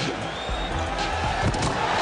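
Background music with a repeating bass beat, over arena crowd noise that thickens in the second half.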